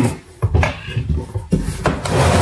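A few dull knocks and scrapes from a cardboard box being handled, its flaps pulled about while the heavy inverter inside is shifted.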